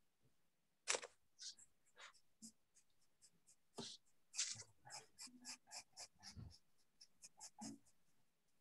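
Pencil scratching on paper in a run of short strokes, coming quicker in the second half, as an apple is shaded in a black-and-white sketch.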